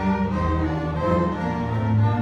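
A high school symphony orchestra playing, its bowed strings (violins, cellos, double basses) to the fore, sustained chords shifting every half second or so.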